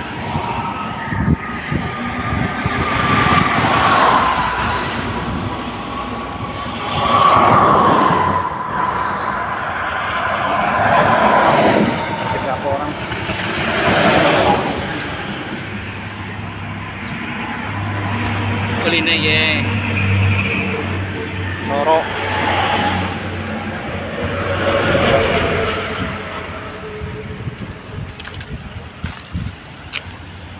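Highway traffic passing close by on a toll road: vehicles go by one after another every few seconds, each one swelling and fading. A low steady engine hum joins about halfway through.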